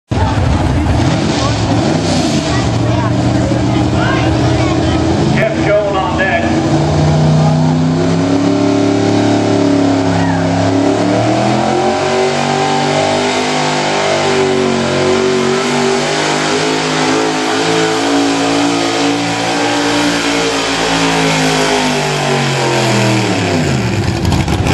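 Modified gas pickup's engine running hard under load, pulling a weight sled. Its pitch climbs, holds high for several seconds, then falls away steeply near the end as the truck winds down.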